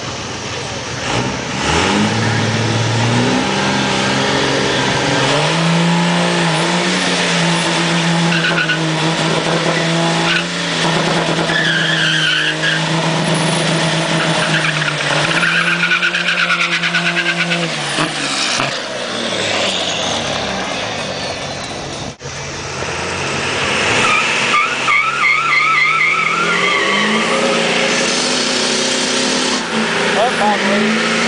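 Diesel pickup doing a burnout: the engine revs up and holds at high rpm for about twelve seconds, with tyres squealing on the pavement. After an abrupt break, a second diesel pickup revs up into another burnout, its tyres squealing again.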